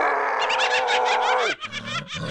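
A cartoon monster's vocal sound: one long, held, pitched cry with a rapid flutter on top, lasting about a second and a half, then breaking off into quieter, choppy noises.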